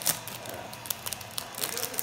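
Plastic wrapper of a Topps Chrome baseball card pack crinkling and tearing as it is pulled open by hand: a quick string of sharp crackles, loudest right at the start.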